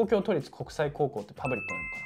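A two-note electronic ding-dong chime, like a doorbell: a higher note about one and a half seconds in, then a lower note just after, both ringing on. It is an edited-in sound effect.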